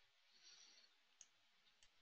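Near silence with two faint, sharp clicks, one a little past a second in and one near the end: computer mouse clicks as the on-screen chart is advanced.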